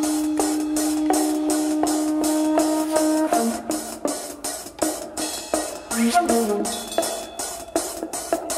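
Flute, sitar and tabla piece. A long held note gives way, about three seconds in, to quick changing melodic notes over steady, evenly spaced tabla strokes.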